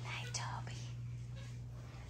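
A person whispering softly, in short breathy snatches in the first second, over a steady low hum.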